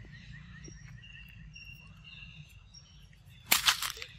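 Quiet forest background with faint, thin, high bird calls, short notes repeating about every second. Near the end there are two brief, loud rustling scuffs.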